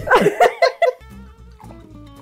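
A woman laughing briefly, then background music with steady held notes and a low bass pulse starting about a second in.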